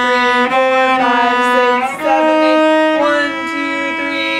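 Cello playing long, sustained bowed notes, stepping up in pitch to a new note about two seconds in and again about three seconds in.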